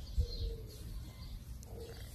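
A neighbour's dog barking faintly, twice, about a second and a half apart.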